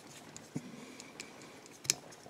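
Fly-tying bobbin wrapping thread around a hook held in a vise: a few faint, scattered ticks, with one sharper click near the end.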